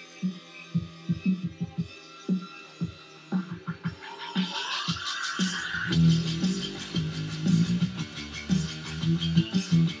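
An electric bass guitar played along to an electronic drum-and-bass backing track. Sparse, short low notes open, then a rising sweep about four seconds in leads into the full beat with fast ticking hi-hats.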